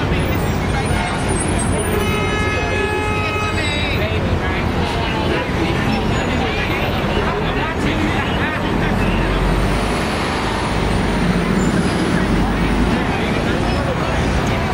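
Busy city street traffic with crowd chatter. About two seconds in, a vehicle horn sounds for under two seconds. Later a heavy vehicle's engine rumbles past for several seconds.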